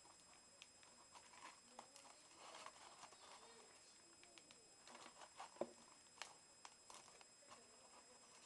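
Near silence with faint, scattered clicks and crinkles of crumpled aluminium foil being handled; a couple of sharper ticks come a little past the middle.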